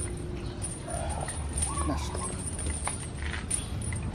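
Two short calls from domestic fowl about a second apart over steady outdoor background noise, with a faint clink or two of metal chain late on.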